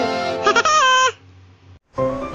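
Short musical logo sting: a pitched sound that drops in steps and cuts off about a second in, followed by a moment of quiet.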